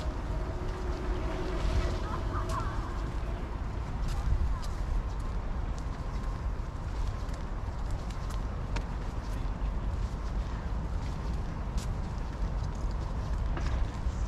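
Outdoor city street background: a steady low rumble with scattered faint clicks, and faint tones in the first couple of seconds.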